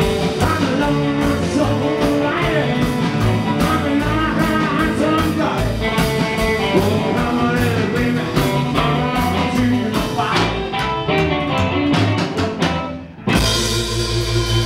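Live rockabilly band playing: acoustic guitar, upright bass, drum kit and electric guitar. The sound drops away briefly near the end, then comes back loud with a held chord.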